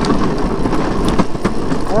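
Steady road noise of a Razor drift trike rolling over asphalt, mixed with wind on the microphone, with a few short sharp knocks from bumps or rattles.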